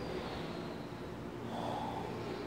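Steady low background rumble with a short breath close to the microphone about a second and a half in.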